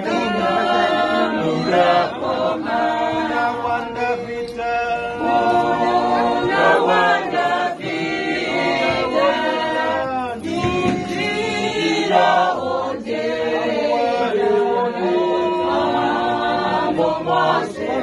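A group of Herero women singing together unaccompanied: a chorus of voices with no instruments.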